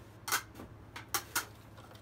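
Three short, sharp metallic clinks of small metal parts and hand tools being handled.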